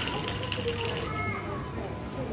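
General background noise of a busy supermarket, with a brief distant voice about a second in and a faint steady tone underneath.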